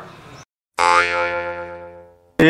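An edited-in comedy sound effect: a single low, twangy ringing tone with many overtones that starts suddenly and dies away over about a second.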